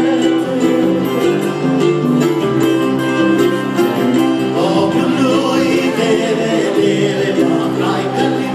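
A live acoustic trio of upright bass, acoustic guitar and electric archtop guitar playing a steady song, with a voice singing over the guitars from about halfway through.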